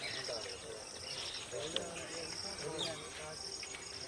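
Insects chirping in repeated high-pitched trills, each lasting about half a second to a second, with faint distant voices underneath.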